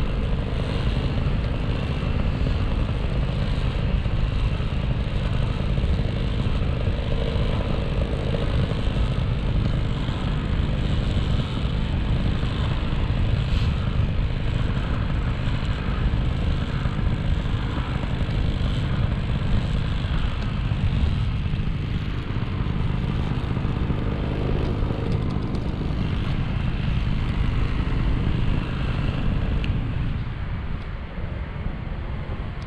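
Tandem paramotor's engine and propeller running steadily in flight, a continuous low drone.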